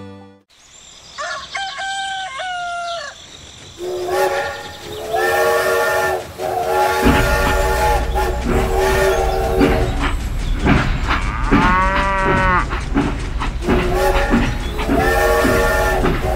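Train sound effects: a train horn sounding in repeated blasts about a second long, over a steady low running rumble that starts about seven seconds in.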